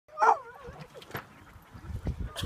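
A dog gives one loud, yelping bark just after the start, trailing off into a wavering whine, then a short sharp sound about a second in.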